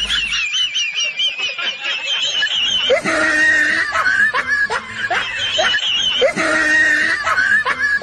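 High-pitched, warbling giggling, a comic laugh sound effect that repeats over and over like a loop.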